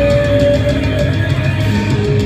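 A live heavy metal band playing, with distorted electric guitars over a drum kit. One long note is held through about the first second.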